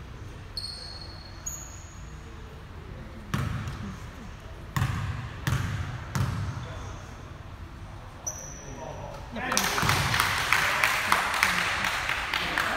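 A basketball bouncing several separate times on a wooden gym floor, with a few short high sneaker squeaks before it. From about nine and a half seconds in, a louder clatter of running feet, squeaking sneakers and voices sets in on the court.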